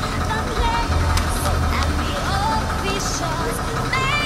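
Music with wavering sung or voiced melody lines over the steady low hum of an idling bus engine.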